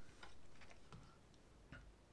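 Near silence: room tone with a few faint, isolated clicks.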